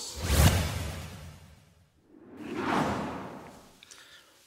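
Two whoosh sound effects from an animated title sequence. The first hits with a low boom about half a second in and fades out by two seconds; the second swells up and dies away near the end.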